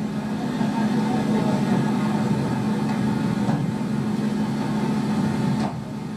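Tour bus engine idling steadily, heard through playback speakers in a room; it dips briefly near the end.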